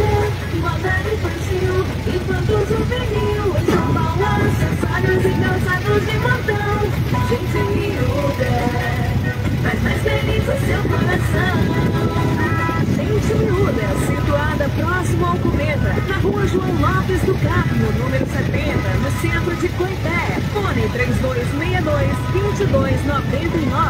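Motorcycle engine running steadily as the bike rolls over a cobbled street, with music and indistinct voices over it.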